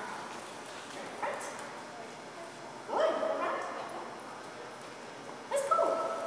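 A dog barking and yipping: a short call about a second in, a louder one about three seconds in, and another loud one with a held note near the end.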